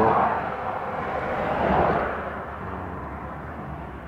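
A passing vehicle: a broad rushing noise that swells at the start and again about two seconds in, then fades, over a low steady hum.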